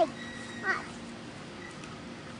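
A young girl's high-pitched voice: one short falling vocal sound about two-thirds of a second in, then only faint steady background hiss.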